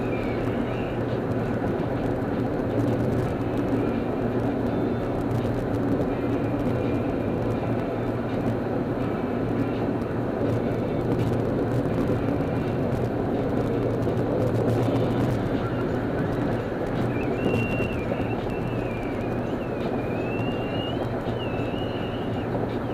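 Steady road and engine noise of a car cruising at freeway speed, recorded on a camera microphone. A thin, wavering high-pitched tone comes and goes over the noise near the start and again in the last few seconds.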